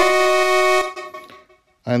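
A synthesizer note, a sample recorded from AudioKit Synth One, played back from a Digistix Drummer pad and pitch-shifted to that pad's key. It holds steadily and stops about a second in.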